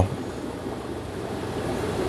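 Steady rushing hiss of fish-room aquarium filtration, water and air running through the tanks' filters.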